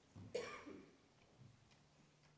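A person coughing once, a short, sharp sound about half a second in that quickly fades into quiet room tone.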